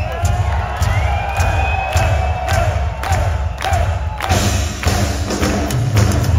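Live heavy metal band playing loud, with drum kit hits and a heavy low end, while the crowd cheers and whistles over it.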